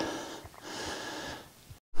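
A man's breath, one breathy exhale about a second long, while climbing a steep rocky slope. The sound cuts out abruptly just before the end.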